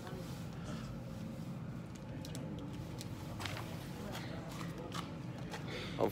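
Steady low background rumble with faint voices and a few soft clicks; no gunshots are heard.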